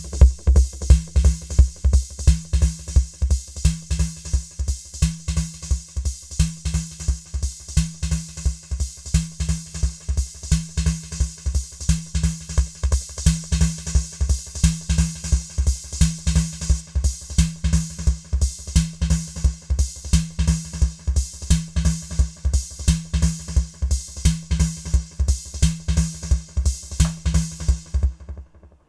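Drum machine beat of bass drum and snare played through an Ace Tone EC-20 tape echo, several playback heads combined so each hit repeats. A steady quick pulse, with a low tone swelling on and off in time with the pattern.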